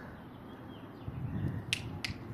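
Faint street background with one sharp click near the end.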